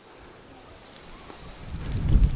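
Wind buffeting the microphone, swelling into a low rumble toward the end.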